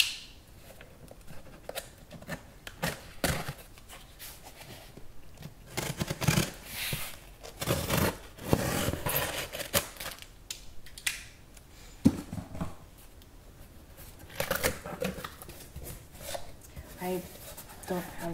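Packing tape on a cardboard box being slit and torn off, in a run of scratchy scraping and tearing strokes with a single sharp click past the middle. Near the end the cardboard flaps are pulled open.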